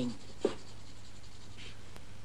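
Steady low hum and hiss of an old television soundtrack, with one short soft click about half a second in.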